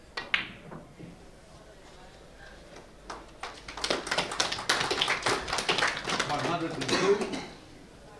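A cue tip striking a billiard ball with one sharp click and the balls clicking together. About three seconds later the audience applauds for about four seconds, greeting a century break.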